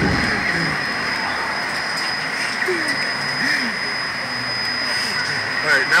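Steady rush of wind over the onboard camera microphone of a Slingshot reverse-bungee ride capsule in flight, with a couple of brief faint vocal sounds from the riders in the middle and a voice starting near the end.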